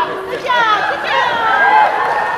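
Voices talking over one another in chatter, with no clear single speaker.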